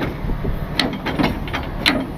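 Tow truck engine idling steadily, with three short sharp knocks, the loudest near the end.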